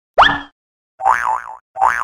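Cartoon sound effects: a quick upward swoop, then two springy boings about three-quarters of a second apart, each with a pitch that wobbles up and down.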